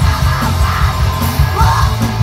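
Live punk rock band playing loud, with distorted guitars, heavy bass and drums, and yelled vocals rising over the band about a third of the way in and again near the end.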